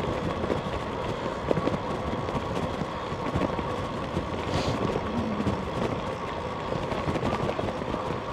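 Road bike rolling along a rough, patched tarmac path: a steady rumble and hiss from the tyres and the moving air.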